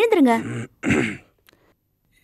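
A man's voice as he stretches on waking: a long wavering vocal sound falling away in the first half second, then a short rough throat-clearing grunt about a second in.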